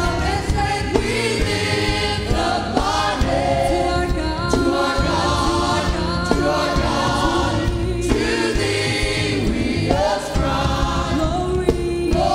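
Church choir and worship singers performing a gospel song together with a live band of keyboards, bass guitar and drums.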